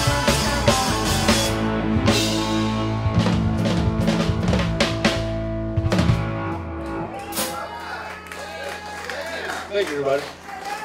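Live rock band, electric guitars, bass guitar and drum kit, playing the last bars of a song. The song stops about six seconds in and the final chord rings out and fades, then voices talk near the end.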